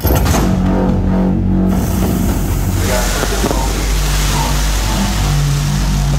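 Movie trailer soundtrack that starts abruptly: low sustained score notes that step in pitch, joined from about three seconds in by a rising rush of noise like a passing engine or whoosh effect.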